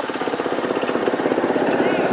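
Ride-on miniature railway locomotive running along the track, with a rapid, steady pulsing throughout.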